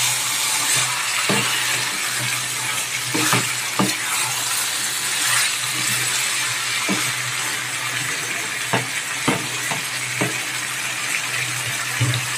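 Chicken and potato pieces in a thick masala sizzling in a nonstick wok while a spatula stirs through them, with scattered clicks and scrapes of the spatula against the pan. A steady low hum runs underneath.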